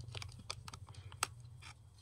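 Light clicks and scrapes of a USB 3.0 Type-A plug being fumbled against and pushed into a laptop's USB port. About a dozen faint ticks, the sharpest a little past the middle.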